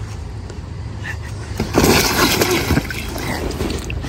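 Water splashing and sloshing in a shallow inflatable pool as a child slides into it, a rush of splashing that starts a little under halfway through and lasts about a second and a half.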